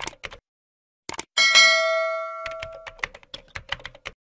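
Subscribe-animation sound effects: a run of quick keyboard-typing clicks, then a bell chime about a second and a half in that rings out and fades over roughly a second and a half, followed by more rapid typing clicks.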